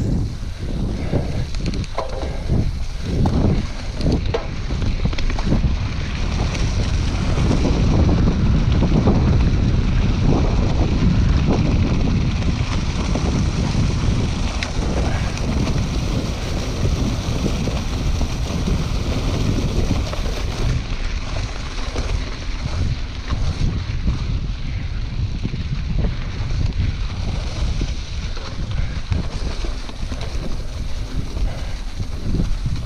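Wind buffeting the action camera's microphone while a Scott Scale 950 hardtail mountain bike rolls over a leaf-strewn dirt trail, with tyre rumble and knocks from the bike going over bumps in the first few seconds. The wind noise is loudest about a third of the way in.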